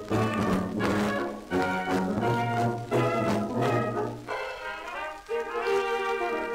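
Instrumental break of a 1930 music-hall comedy song played by a small cabaret dance orchestra, reproduced from an 8-inch shellac 78 rpm disc. The bass notes drop out about four seconds in, and higher held notes follow.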